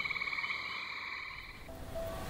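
Frog calling in a fast, steady pulsing trill that stops shortly before the end, as a few faint held musical notes begin.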